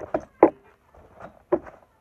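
Handling noise of small objects being picked up and set down by hand, with two sharp knocks, the loudest about half a second in and another about a second later, among lighter clicks.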